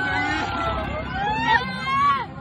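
Several high-pitched voices, mostly children, screaming and shrieking with excitement on a fairground ride, in long rising and falling yells that overlap.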